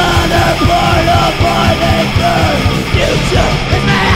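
Punk-metal song playing: a vocalist yelling over the full band with a fast, steady drumbeat.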